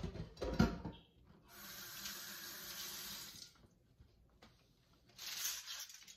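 A knock and clatter at the start, then a kitchen tap running steadily for about two seconds, and a short rustle near the end.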